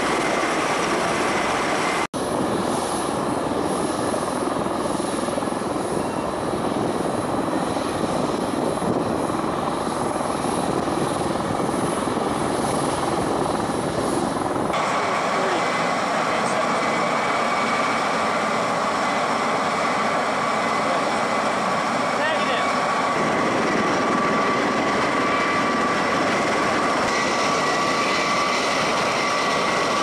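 MV-22 Osprey tiltrotors running on the ground, with a dense steady rotor and turbine noise. The sound changes suddenly about 2 s in and again about halfway, and from then a steady high whine sits over it.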